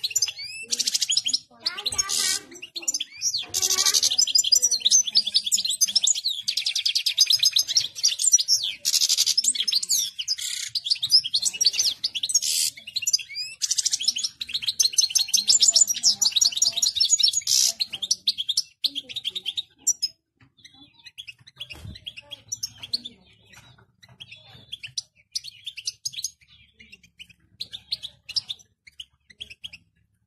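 European goldfinch singing in full excitement: a fast, dense, high-pitched twittering song for about the first eighteen seconds, then scattered chirps and short phrases.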